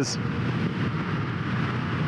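Indian FTR 1200S V-twin running steadily at road speed, heard from the rider's seat under a continuous rush of wind and road noise.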